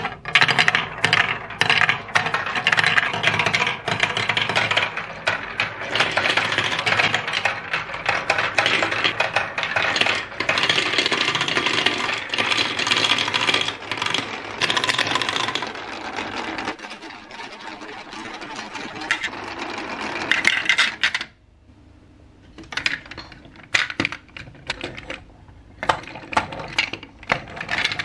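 Plastic marbles rolling and clattering down a plastic building-block marble run, a dense continuous rattle of balls on tracks and funnels for about twenty seconds. The rattle then drops away to sparser separate clicks and knocks.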